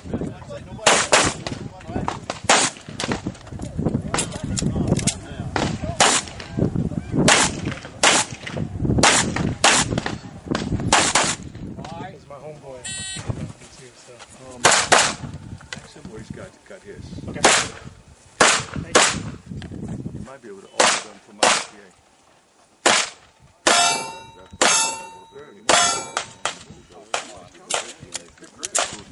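Semi-automatic pistol shots fired in quick strings, more than twenty in all, with short pauses between strings. Near the end, hits on steel targets ring out with a metallic clang after the shots.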